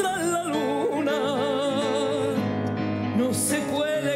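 A woman singing a ballad live to grand piano accompaniment, holding long notes with a wide vibrato.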